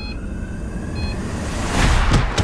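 Trailer sound design: a rising noise swell that builds in loudness toward the end, under a faint tone gliding slowly upward. A short high electronic beep sounds at the start and again about a second in.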